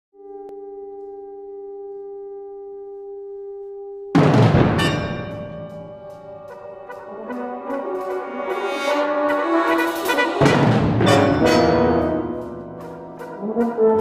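Brass band holding a soft sustained chord, then breaking into a sudden loud full-band entry about four seconds in, with another loud attack about ten seconds in and a brief dip before it builds again.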